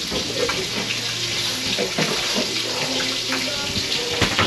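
Steady hiss of running water, with a low hum and faint voices underneath.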